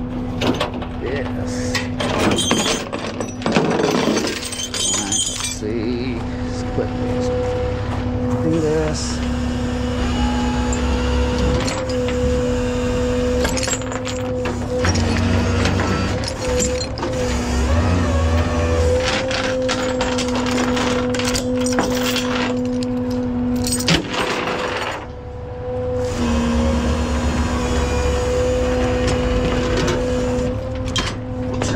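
Rollback tow truck's hydraulics whining at a steady pitch over the running truck, as the bed and winch work a trailer on the deck. Metal knocks come in the first few seconds, and the whine breaks off briefly about halfway and again near the end.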